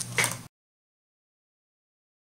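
Dead silence: the audio track cuts out about half a second in, after a low hum and one short faint noise.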